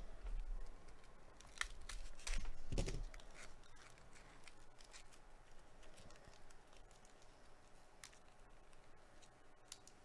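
Foil wrapper of a 2022 Topps Inception trading card pack being torn open and crinkled by gloved hands, with the loudest crackling about two to three seconds in and fainter crinkles after.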